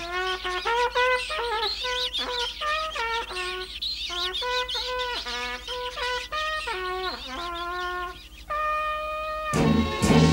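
A cartoon trumpet playing a jaunty tune of short notes stepping up and down, with a few notes sliding down at their ends, and closing on a longer held note. A brief noisy burst follows at the very end.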